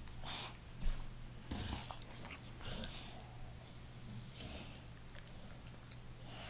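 Two dogs mouthing and nuzzling each other at close range, with a run of short breathy snuffles in the first three seconds and one more later on.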